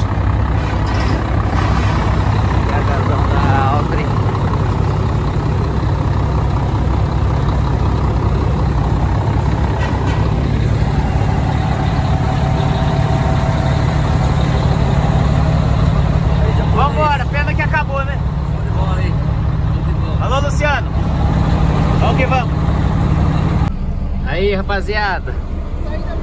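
Heavy truck diesel engine idling, a steady low rumble, with people talking in the background. The rumble drops away near the end.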